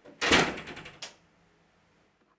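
Wooden interior door shutting: one loud knock as it closes, followed by a few quick rattling clicks from the latch. It is all over by about a second in.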